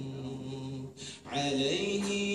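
A man singing an unaccompanied nasheed, holding long drawn-out notes, with a short breath pause about a second in before the next phrase.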